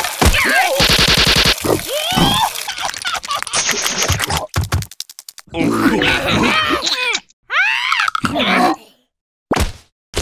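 Cartoon characters' wordless vocal noises: grunts, groans and sliding cries in short bursts, mixed with comic sound effects, with two brief silent breaks.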